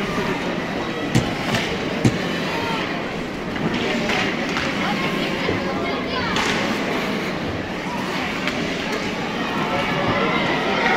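Ice hockey game sound in a rink: a hum of players' and spectators' voices, with sharp knocks from hockey sticks and the puck, the loudest about a second and two seconds in.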